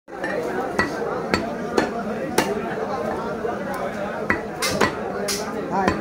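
Butcher's cleaver chopping beef on a wooden stump block: about nine sharp, irregular chops with a pause in the middle.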